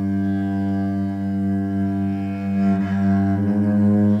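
Cello bowed in long, sustained low notes, forming a steady drone; the upper notes shift slightly about three seconds in.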